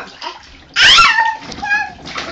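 A toddler's loud, high-pitched vocal cry that slides down in pitch about a second in, followed by a shorter, quieter voice sound, with bath water in the background.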